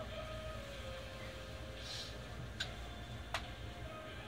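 Commuter train moving past close by: a steady low rumble with a faint whine that drops slightly in pitch, and two sharp clicks about three-quarters of a second apart near the end.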